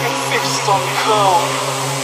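Electronic dance music in a beatless breakdown: a sustained synth drone with short gliding, voice-like sounds over it in the first second and a half.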